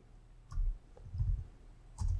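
A few faint computer keyboard keystrokes, spaced apart, as a short command is typed and entered.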